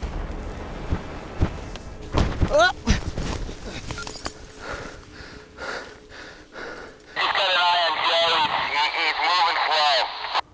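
Wind rumbling on the microphone, then a person's whooping shout with a swooping pitch about two and a half seconds in. Near the end a voice comes over a two-way radio, thin and narrow-band.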